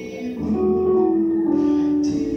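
A man singing a slow hymn into a microphone over a church PA, holding long sustained notes that shift pitch about half a second in and again near the end.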